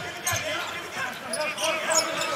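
Basketball being dribbled on a hardwood arena court, with voices murmuring in the background.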